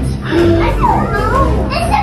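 Several young children talking and calling out in high voices, over steady background music.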